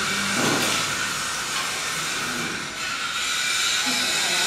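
Steady hiss that carries on unchanged throughout, with faint low voices under it near the start and around the middle.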